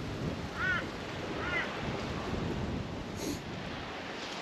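Wind buffeting the microphone over the wash of waves on the shore, with a few short high chirps about half a second in and again about a second later.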